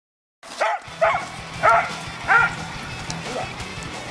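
A dog barks four times in quick succession, then once more faintly, over background music.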